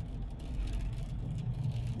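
Low, steady rumble of a car heard from inside the cabin, the hum of the engine and the vehicle.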